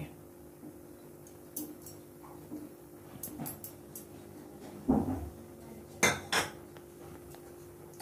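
Steel kitchen utensils clinking and knocking as ghee is tipped from a bowl into a steel kadhai: a few light clinks, a dull knock about five seconds in, then two sharp clinks about a second later. A faint steady hum runs underneath.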